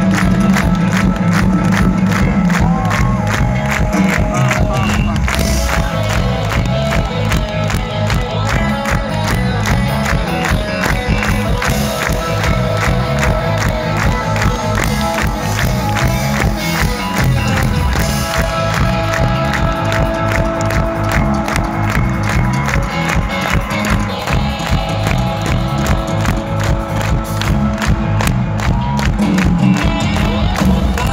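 Live rock band playing at full volume through a festival sound system, with a steady driving beat, heard from inside a cheering crowd.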